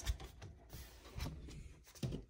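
Faint handling sounds as the lid of a wire-grid laundry hamper is lifted open: a soft knock at the start, then light rubbing and rustling.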